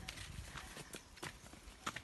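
Faint footsteps on a rocky dirt path: irregular clicks and scuffs of steps, with a sharper step near the end.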